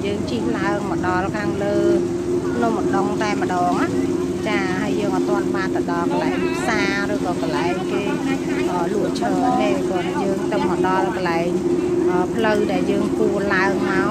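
People talking over a steady mechanical hum that holds one pitch throughout.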